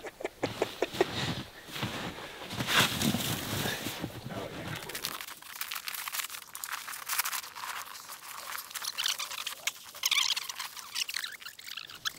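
Boots crunching and shuffling in snow, with clothing rustle and a few short knocks, irregular rather than steady. About five seconds in, the lower sounds fall away, leaving a lighter, higher crackle.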